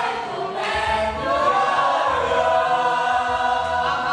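A group of people singing a song together in chorus, holding long notes.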